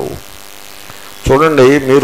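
Steady electrical mains hum, a stack of even tones left in the recording with no noise reduction, heard plainly in a gap in a man's speech; his voice comes back in just over a second in.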